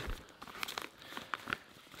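Clear plastic zip-top bag crinkling faintly as hands rummage through the cord and small items inside it, with a few light scattered clicks.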